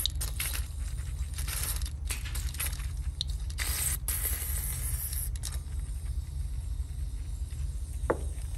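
Aerosol can of WD-40 sprayed through its straw onto a chainsaw chain in short, irregular bursts of hiss, the can nearly empty. A steady low hum runs underneath.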